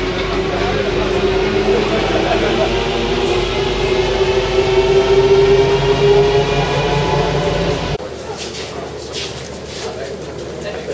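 Métro train running, its traction motors giving a steady whine with overtones that rises slowly in pitch as the train gathers speed, over a low rumble, with passengers talking. About eight seconds in it cuts abruptly to voices and footsteps in a station corridor.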